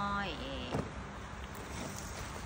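A woman's drawn-out, sing-song word trails off and falls in pitch in the first half second. A single sharp click follows, then a steady low background rumble.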